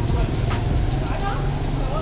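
Street traffic noise with a steady low rumble, with faint voices in the background.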